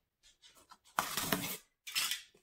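Scissors slitting the packing tape on a cardboard shipping box: faint scratches at first, then a louder scraping rasp about a second in and another short one near the end.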